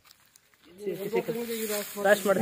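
A person talking, starting just under a second in, after a quiet start with faint hiss.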